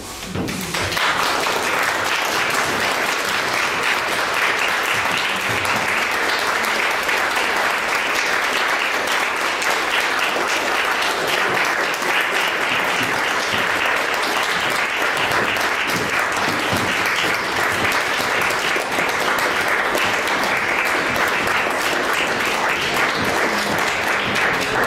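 Audience applause that breaks out suddenly just after the start and carries on steadily and loudly, a dense patter of many hands clapping.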